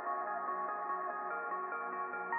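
Background electronic music: sustained synthesizer chords with no beat, sounding muffled.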